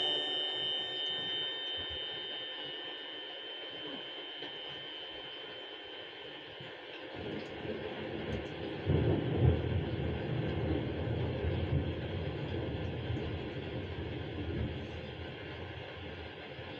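The last held note of a song rings and dies away over about seven seconds. Then a low rumbling noise swells up and carries on, like a passing vehicle.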